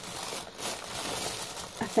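Tissue paper rustling and crinkling as it is unfolded by hand.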